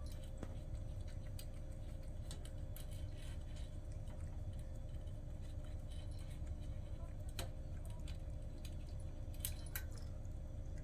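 A cat eating from a metal bowl: faint, irregular crunches and small clicks, over a low steady background hum.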